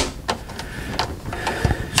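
Plastic drain-pipe sections clicking and rubbing as they are pushed together by hand: a sharp click at the start, another about a second in, and a short dull knock near the end.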